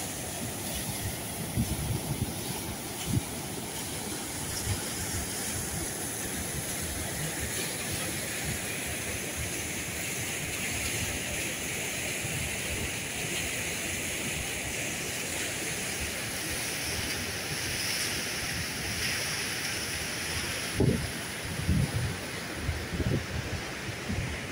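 White-water river rushing over boulders below a dam's open sluice gates: a steady, continuous rush of water. Gusts of wind buffet the microphone with low thumps, at the start and again more strongly near the end.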